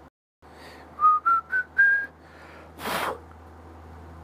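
A man whistling four short notes, each a step higher than the last, about a second in. A short puff of noise follows near the end.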